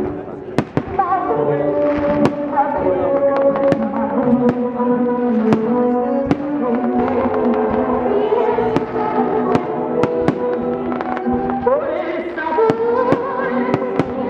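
Aerial fireworks shells bursting with a dozen or more sharp bangs, irregularly spaced about every second, over the music played for the pyromusical show, which holds long sustained notes.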